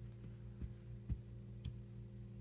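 A steady low hum, with four faint, soft knocks about half a second apart.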